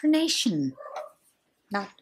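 A woman's voice drawling a word in a croaky, mock-gruff tone, its pitch sliding steeply down, followed by a short rough grunt and a pause; normal speech resumes near the end.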